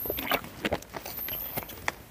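A person drinking water, a series of short gulps and small clicks and knocks spread through a couple of seconds.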